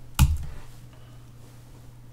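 A single computer keyboard keystroke about a quarter of a second in, the last letter of a terminal command being typed. After it comes a faint steady low hum.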